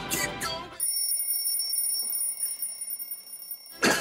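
Electronic alarm of a GE clock radio going off, a steady high-pitched tone that starts about a second in and stops near the end.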